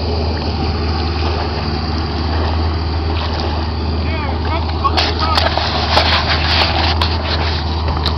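Low, steady engine rumble from a lifted Dodge Durango, with faint voices and a few sharp clicks in the second half.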